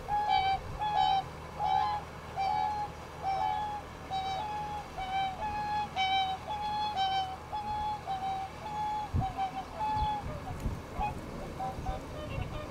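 Whooper swans calling: a run of short, trumpet-like calls at about two a second, given while the birds display to each other with wings raised. The calls stop about nine seconds in, and a few low thumps follow.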